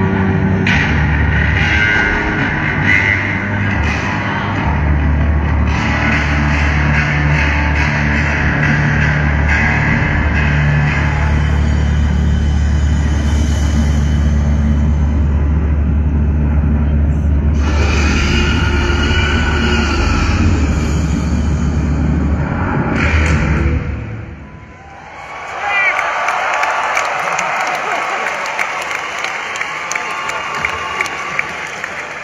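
Loud live heavy rock through a stadium PA, dominated by deep, sustained, distorted electric bass notes. The music drops away about 24 seconds in, and a large crowd cheers, screams and whistles.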